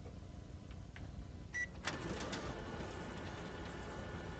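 Office photocopier: a short beep about one and a half seconds in, then a click and the machine running with a steady mechanical hum.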